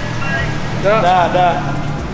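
A person's voice, a short burst of speech or laughter about a second in, over a steady low hum.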